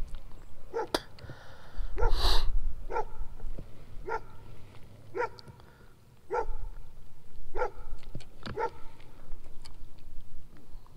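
A dog barking repeatedly, about seven short barks spaced roughly a second apart.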